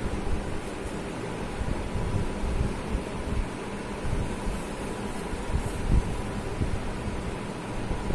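Steady rushing background noise with an uneven low rumble underneath, and no speech.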